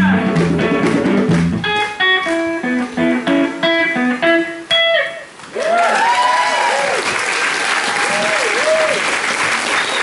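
A band ends a song: the full band plays briefly, then a guitar picks a run of single notes that stops about five seconds in. After a short pause the audience breaks into applause with whoops and cheers.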